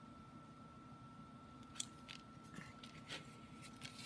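Faint paper handling: a few light clicks and rustles as a photo is laid on a scrapbook page and pressed down by hand, over a faint steady high-pitched hum.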